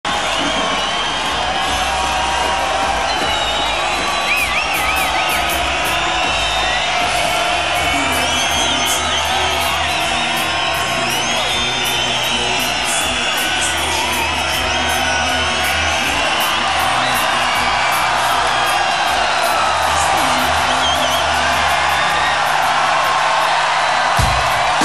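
A large open-air festival crowd cheering, whistling and whooping steadily, with low, sustained bass notes from the stage music underneath.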